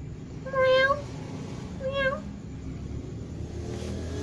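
A domestic cat meowing twice: a longer meow about half a second in, then a shorter one about two seconds in.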